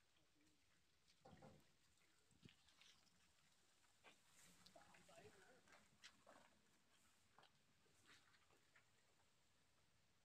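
Near silence: faint outdoor ambience with a soft knock a little over a second in and a few faint, brief voice-like calls and clicks in the middle.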